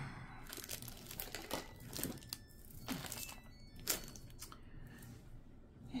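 Rustling and crinkling of items being handled and set down, with a few scattered light knocks, the sharpest about four seconds in.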